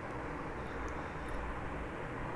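Steady low background rumble and hiss, with no speech.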